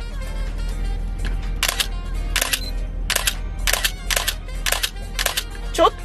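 Canon EOS-1 film SLR firing its shutter again and again with its back open: about seven releases roughly half a second apart, each a quick double click of mirror and vertically travelling focal-plane shutter. The sound is noticeably metallic, typical of what is thought to be a Copal-made shutter.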